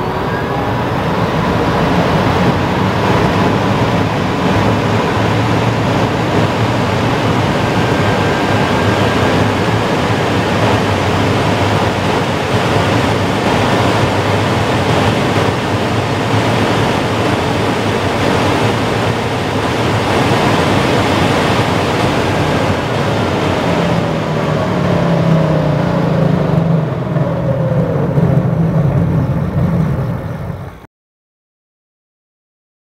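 In-cabin sound of a Rimac Nevera R electric hypercar at full throttle at very high speed: a loud, steady rush of wind and tyre noise with the faint whine of its electric motors. Near the end, under hard braking, the whine falls in pitch over a deeper rumble.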